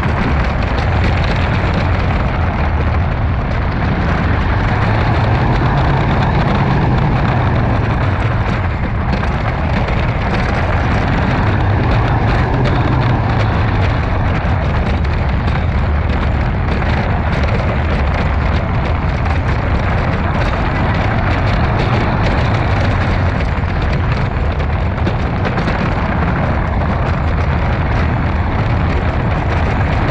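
Timberhawk wooden roller coaster train running along its wooden track: a loud, continuous low rumble with fine rattling clatter of the wheels on the track, swelling a few times as the train goes on.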